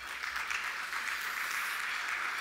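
Audience applauding, swelling about half a second in and then holding steady.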